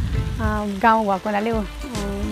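A woman's voice, with wind rumbling on a clip-on microphone.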